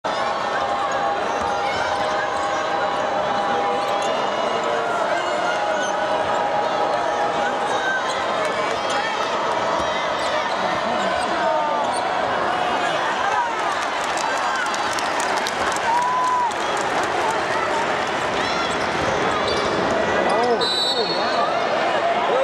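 A basketball bouncing on a hardwood court, with short squeaks from players' shoes, over the steady chatter of an arena crowd.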